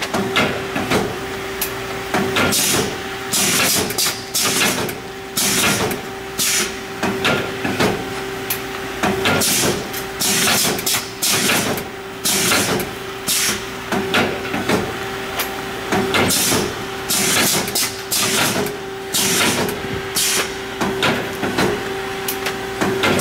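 Form-fill-seal packaging machine cycling steadily, with a sharp hiss about once a second over a constant hum. Each burst marks one seal-and-index stroke as the machine turns out strips of sealed pouches, about 59 a minute.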